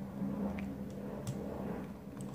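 Two faint clicks from the touchpad buttons of an Asus Eee PC 1005PX netbook over a steady low hum.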